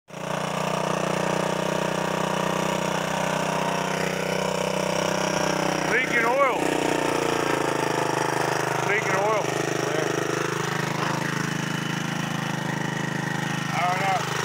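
Honda ATC 200E three-wheeler's single-cylinder four-stroke engine idling steadily on its new carburetor and intake, with a fast even firing pulse.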